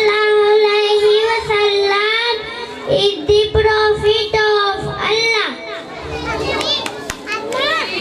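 A young child reciting Islamic prayers into a microphone in a chanted, sing-song voice, holding long notes for the first few seconds, then shorter, quieter phrases after about five seconds in.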